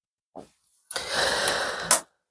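A deck of tarot cards being shuffled by hand: about a second of dense rustling that ends in a sharp snap.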